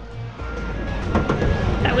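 Background music with a quick steady beat that stops less than half a second in. It gives way to busy outdoor street noise, with a voice beginning near the end.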